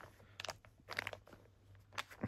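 Faint crinkles and rustles of a plastic snack packet being handled, a few short ones spread through.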